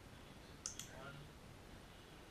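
A dog-training clicker pressed and released: two sharp clicks in quick succession, marking the dog for holding its down-stay.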